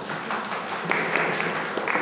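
Audience applauding, the clapping growing louder about a second in.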